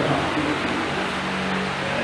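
Steady hiss with a low, even hum.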